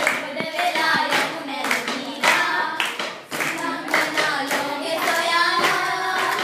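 A group of young girls singing a baila song together, clapping their hands along in rhythm.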